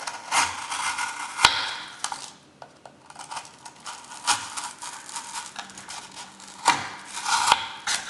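Spyderco Delica folding knife slicing through corrugated cardboard: scratchy cutting strokes broken by several sharp clicks, the loudest about a second and a half in and near the end. On one cut the blade catches on something hard inside the cardboard.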